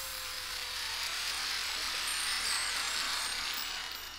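A steady high-pitched hiss of noise, like static, filling a break in the music, with a faint held tone that fades out over the first few seconds.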